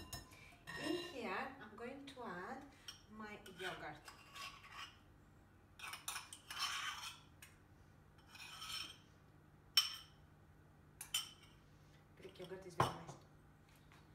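A whisk and a spoon working in a glass mixing bowl: eggs being whisked, yogurt scraped off a spoon into the bowl, and a few sharp clinks of the spoon tapped against the glass. The loudest clink comes near the end.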